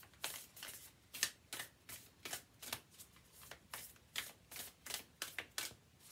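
A deck of oracle cards being shuffled by hand: an irregular run of short papery card slaps and riffles, about three a second.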